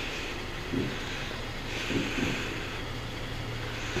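Heavy breathing through the nose close to the microphone, a couple of hissy breaths, over a steady low hum.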